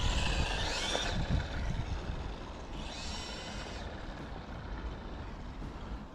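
Tamiya M05 RC car's brushed electric motor and high-speed gearing whining as the car accelerates away, the whine rising in pitch in the first second, with a second burst of whine about three seconds in. The sound fades with distance over a steady low rumble of wind on the microphone.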